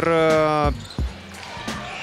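A commentator's voice holds a drawn-out vowel for the first moment. Then a basketball is dribbled on a hardwood court: a few separate low thuds over faint arena background.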